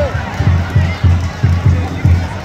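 Stadium crowd with supporters' drums beating about four times a second under scattered shouting voices.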